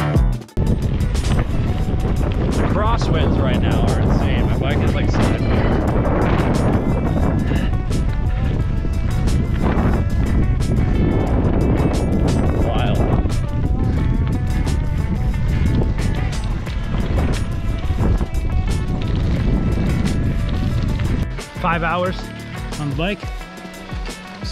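Steady wind rushing over a camera microphone on a moving bicycle, dense and heavy in the low end, dropping away about 21 seconds in. Background music and a voice are mixed in beneath it.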